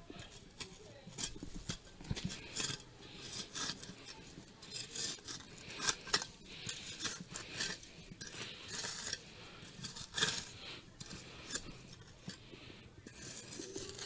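Metal mason's trowel scraping and digging into loose, dry earth in a series of short, irregular strokes.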